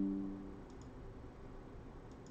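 The tail of a low ringing tone, struck just before, dies away in the first half-second. After it come faint room tone and a few soft double clicks of a computer mouse.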